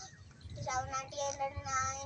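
A young child's voice counting numbers aloud in English in a chanting, sing-song tone, with drawn-out syllables.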